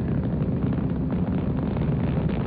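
Saturn V rocket's five F-1 first-stage engines during ascent: a loud, steady rumble with a ragged crackle through it.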